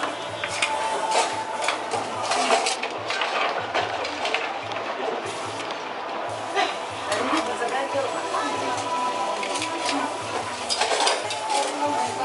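A stone hot pot being stirred: a metal utensil scrapes and clinks against the heated serpentine stones and the pot in the hot, steaming broth, giving many short clinks over a sizzling hiss. Restaurant voices sit behind it.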